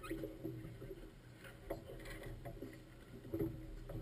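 Faint, muffled voices over a steady low hum, with a few light knocks and rustles of gear being handled.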